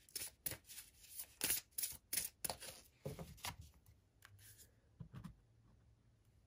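A deck of oracle cards being shuffled in the hands: a quick run of card slaps and flicks for about three seconds, thinning to a few soft taps as a card is drawn and laid down.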